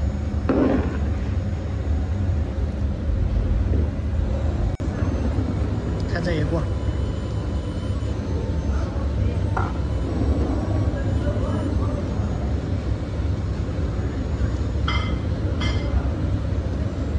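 A long-handled steel shovel scraping and turning a huge load of stewed cabbage and pork in a wok 1.5 metres across, with scattered short scrapes and clinks over a steady low rumble.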